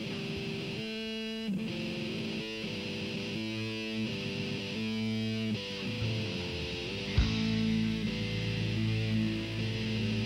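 Live rock band playing an instrumental passage with no vocals. Electric guitar and bass hold notes that change every second or so. About seven seconds in there is a sharp hit and the playing gets louder.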